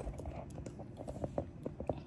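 Handling noise from a hand-held phone being moved and turned: a string of small, irregular clicks and taps over a low rumble.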